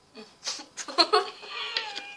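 A few short sharp bursts, then a high-pitched, wavering, drawn-out voice sound like a whine or squeal from a girl, breaking into a giggle.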